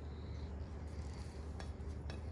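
Quiet steady low hum, with two faint clicks of a plate being handled about one and a half seconds in.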